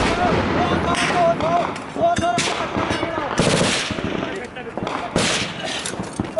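Automatic gunfire in rapid, sustained bursts, loudest about a second, two and a half and three and a half seconds in, and again past five seconds.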